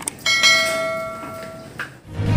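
A bright bell-like chime strikes about a quarter second in, with several ringing tones that fade away over about a second and a half. It is the notification-bell sound effect of a subscribe-button animation. A short click follows near the end.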